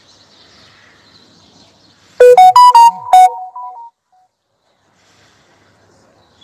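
A short, loud electronic chime of several quick pitched notes stepping up and down, lasting under two seconds, cut off by a moment of dead silence. Faint outdoor background is heard before and after it.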